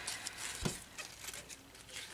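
Faint handling sounds as a ribbon hair bow with a metal clip is turned in the hands, with one short soft click a little over half a second in.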